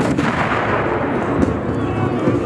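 A single loud black-powder gun blast right at the start, its boom rolling on and fading over the next second.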